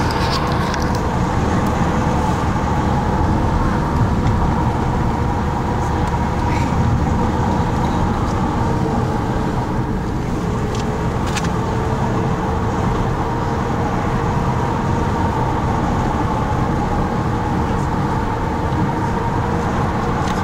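A car driving: steady engine and road noise with a constant droning hum.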